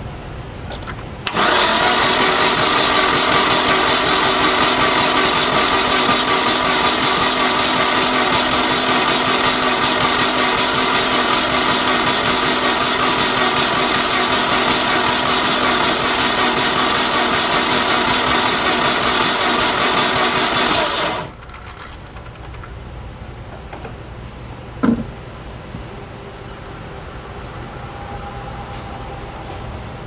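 Starter motor cranking a 2003 S10's 2.2L four-cylinder engine at a steady, even speed for about twenty seconds without it catching, then stopping suddenly. Crickets chirp before and after, and there is one short knock a few seconds after the cranking stops.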